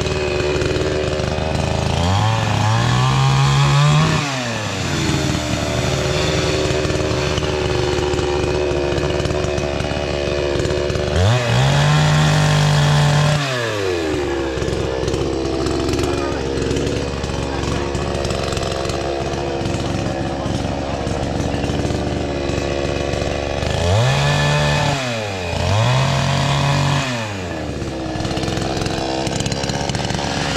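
Two-stroke chainsaw idling, then revved up to full speed and back down four times: once about two seconds in, once around eleven seconds, and twice in quick succession near the end.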